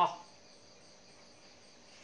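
Faint, steady high-pitched insect chirring in the background, with the last of a man's word cut off at the very start.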